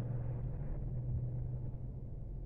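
Steady low hum of an idling engine with a low rumble beneath it.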